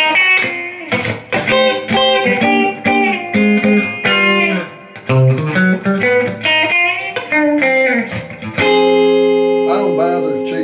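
Electric guitar played through a Blackface Fender Princeton Reverb tube amp, under test after a full rebuild: a run of single-note lead phrases, some notes bent in pitch, then one chord struck about nine seconds in and left ringing.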